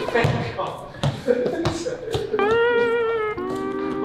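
Background music: a held, slightly wavering note begins about two and a half seconds in and gives way to a steady chord near the end. Short knocks and voices come before it.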